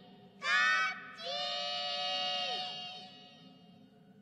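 High, childlike cartoon kitten voices calling out together: one short call, then a long drawn-out call that drops in pitch and fades near the end.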